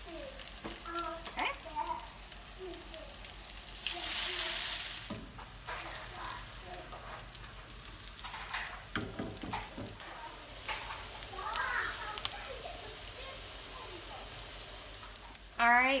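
Salmon cakes frying in oil in a nonstick skillet, a steady low sizzle. About four seconds in the sizzle swells much louder for about a second.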